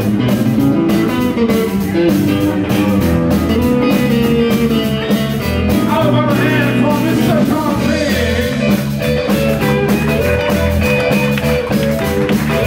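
Live blues band playing an instrumental passage: electric guitar leading over electric bass and drum kit, with a steady beat throughout.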